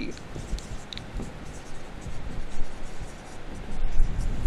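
Marker pen writing on a whiteboard: a run of soft scratchy strokes as letters are written.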